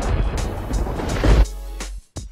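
Intro music sting: a loud, dense rumble over music that drops suddenly to a quieter steady low hum about one and a half seconds in.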